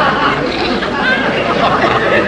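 Studio audience laughing on a sitcom laugh track: many overlapping laughs at a steady level.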